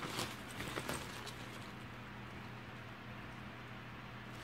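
Faint rustling and a few soft clicks of thin nylon packing cubes being handled, mostly in the first second, over a low steady hum.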